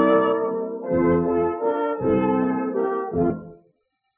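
Brass band playing a waltz on an old acoustic recording from 1906, held chords changing about once a second, then fading into a brief silence near the end.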